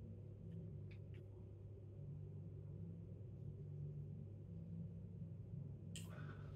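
Quiet room tone: a steady low hum, with two faint ticks about a second in.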